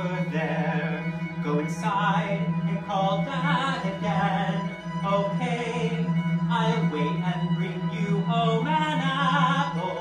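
Live chamber opera: a singer sings with wide vibrato over a small string ensemble, with a low note held steady underneath.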